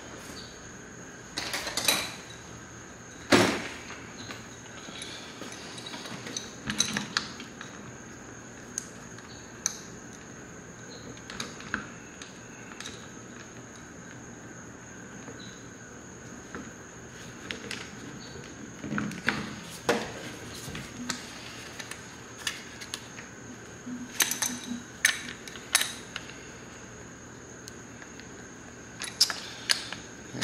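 Scattered clinks and knocks of an adjustable wrench and small metal parts being handled on a workbench while the mounting nuts of motorcycle turn-signal stalks are worked loose. A faint steady high-pitched whine runs underneath.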